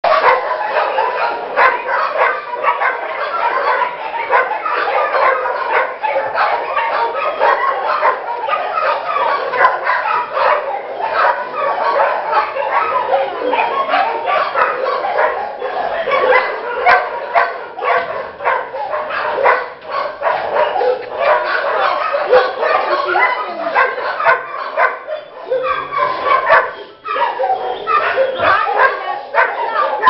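Many dogs barking and yipping at once in a kennel: a continuous chorus of overlapping barks with no pause.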